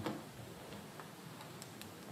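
A few faint, irregular clicks over quiet room tone.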